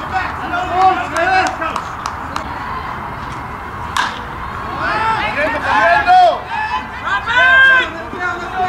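Ballplayers' voices calling from the field, with one sharp crack of a wooden bat hitting the ball about four seconds in; the shouting gets louder and busier after the hit.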